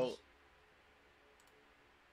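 A couple of faint computer-mouse clicks about a second and a half in, over quiet room tone, just after a man's voice trails off.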